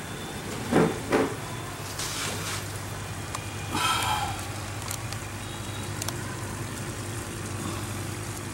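Electric aquarium air pump running with a steady low hum while it feeds an air stone in a breeding tub. Two short knocks come about a second in, and there is a brief pitched sound near the middle.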